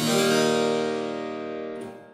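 A keyboard instrument sounds E flat tuned in quarter-comma meantone. The note is struck right at the start and slowly dies away.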